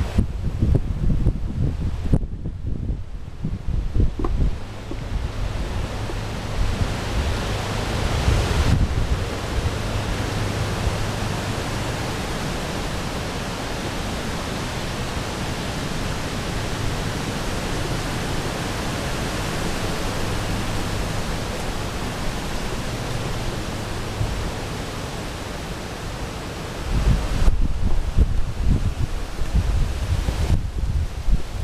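Wind buffeting the microphone: gusty low rumble for the first several seconds and again near the end, with a steady even rushing hiss in between.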